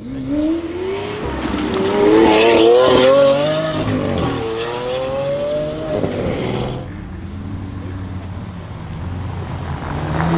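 Supercar engine accelerating hard, its revs climbing and dropping back at several quick upshifts. It fades to a quieter, steadier engine sound about seven seconds in.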